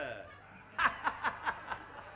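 A person laughing briefly into the microphone, a quick run of about five 'ha' pulses in the middle, after a word that trails off.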